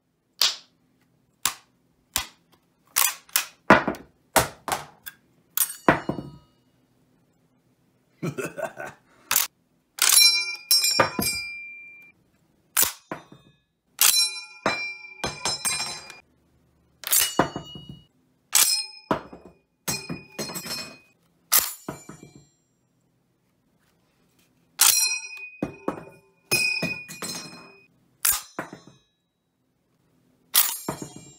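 Rifle bolts and actions worked by hand, giving a run of sharp metal clicks and clacks as empty en-bloc clips drop or spring out of the magazines. From about ten seconds in, the M1 Garand's clip ejects again and again with a ringing metallic ping.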